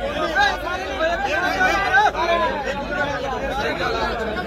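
A crowd of men talking over each other, several voices overlapping with none standing out clearly.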